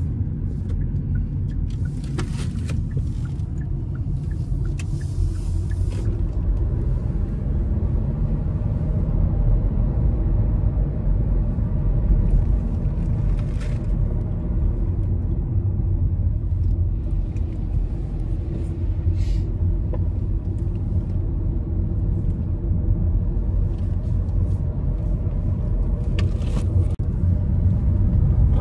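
Steady low rumble of a moving car heard from inside the cabin: engine and tyre noise on the road, with a few brief hisses over it.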